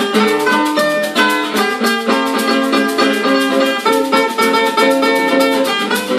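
Two acoustic guitars playing an instrumental tune, one strumming chords and the other picking a melody, with a hand shaker keeping a steady, even rhythm.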